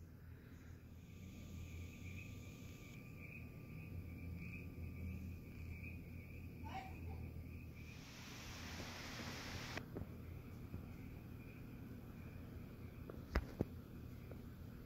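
Faint room tone with a low steady hum and a thin, steady high whine. About eight seconds in, a couple of seconds of rustling as the camera is handled, then two light clicks near the end.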